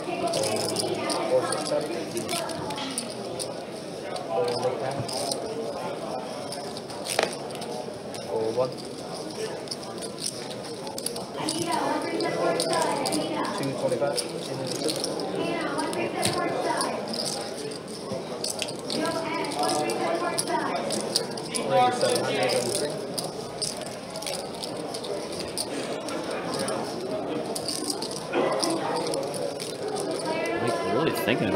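Indistinct murmured talk from players around a poker table, with scattered clicks and rattles of poker chips being handled and stacked.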